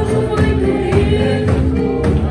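A congregation singing a gospel song together in chorus over music with a steady beat.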